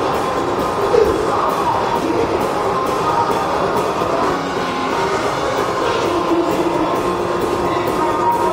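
Live hard rock band playing loud and steady, an instrumental stretch with electric guitar and drums and no lead vocal, with regular cymbal hits and sustained guitar or keyboard notes. It is recorded from the audience, so it sounds dense and somewhat distorted.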